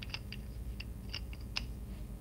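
A run of light, sharp, irregular clicks and ticks, about eight in two seconds, over a faint steady low hum.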